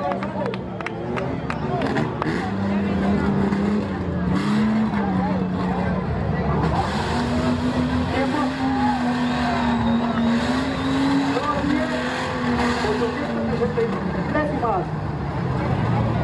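Off-road 4x4 engine revving hard under load in mud, its pitch climbing and dropping again and again, with spectators' voices and shouts over it.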